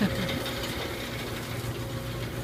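Motor-driven chikuwa rotisserie turning a row of skewers over a gas grill, its gear drive giving a steady mechanical hum.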